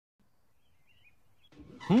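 Near silence, then faint background noise fading in. Near the end a voice starts, rising steeply in pitch.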